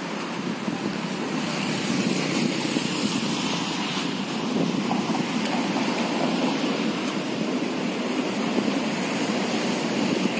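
Steady outdoor rushing noise with no distinct events: wind on the microphone mixed with road traffic.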